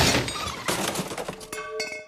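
Cartoon kitchen clatter: a run of clinks and knocks from bowls and utensils, several ringing briefly, as a sung note fades out at the start.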